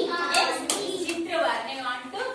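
Talking throughout, with two short sharp clicks about a third of a second and two thirds of a second in.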